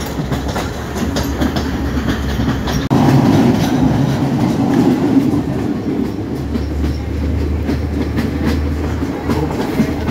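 Udarata Menike passenger train running along the track, heard from inside the carriage by an open window: a steady rumble with the clickety-clack of wheels over rail joints. There is a sudden brief break about three seconds in, after which it runs louder for a few seconds.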